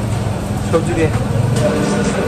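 A motor vehicle's engine running with a steady low hum that stops near the end, under people talking.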